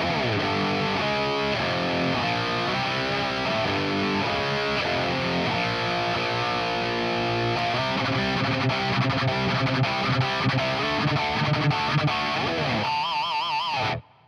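Distorted electric guitar playing a metal rhythm part through a Line 6 Helix preset built on the Line 6 Fatality amp model, boosted and gated, with a hairy British-style gain. Near the end it holds a single note with wide vibrato, then cuts off sharply.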